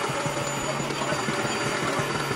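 Upright carpet cleaner running: a steady motor and suction noise with a thin high whine as it is pushed across carpet.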